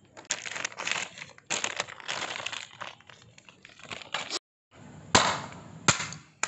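Dry crunching and crackling in several bursts, then, after a brief cut, sharp cracks and tearing as dried coconut husk is pulled apart by hand.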